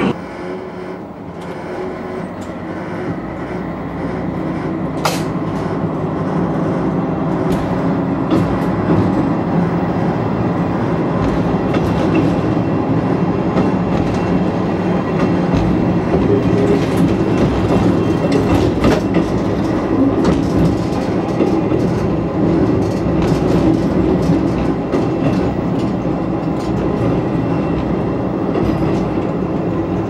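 Diesel railcar running on the Hisatsu Line, heard from inside the car. Engine and running gear make a steady rumble with scattered clicks of the wheels over rail joints, growing louder over the first fifteen seconds or so, then steady.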